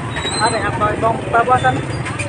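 A person talking over the steady low rumble of street traffic.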